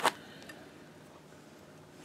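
A sharp click of a hard plastic graded-card case being handled, with a fainter tick about half a second later, then quiet room tone.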